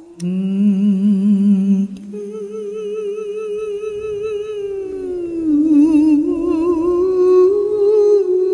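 Wordless vocal music: voices holding long notes with vibrato. A lower voice drops out about two seconds in while a higher voice carries on, stepping down and then back up.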